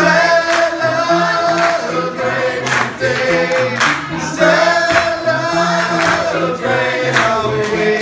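Small gospel vocal group of men and women singing in harmony, with hand claps on the beat about once a second.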